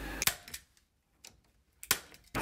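Hand staple gun firing staples through chicken wire into barn planking: three sharp clicks, the loudest near the end.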